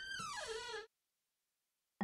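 Cartoon sound effect of a door creaking open: a single creak that falls in pitch, under a second long.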